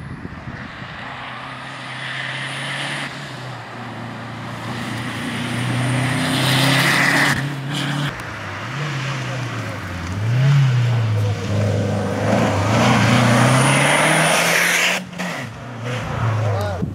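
A rally car's engine at full stage pace, its revs climbing and dropping again and again through gear changes, growing louder as the car approaches.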